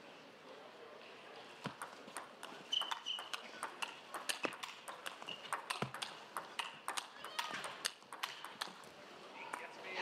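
Table tennis rally: a long, uneven run of sharp clicks as the ball strikes the rackets and the table, starting about two seconds in and stopping shortly before the end. A few short high squeaks come through near the start of the rally.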